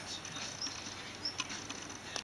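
Quiet room tone with three faint, short, high chirps about two-thirds of a second apart, and a few light clicks.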